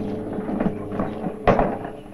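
A single heavy wooden thump about one and a half seconds in, a strongbox being set down, over a low steady hum and faint shuffling.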